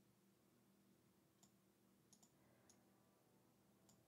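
Near silence with about five faint, sharp computer mouse clicks spread through it.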